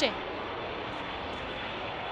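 Steady outdoor stadium ambience during a soccer match: an even wash of background noise with no distinct events.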